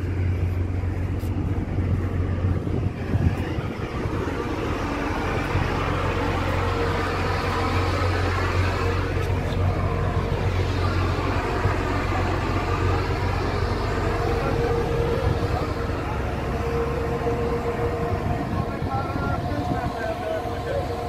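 Steady low rumble and wind noise on the deck of a ship under way, with men's voices talking and calling out over it.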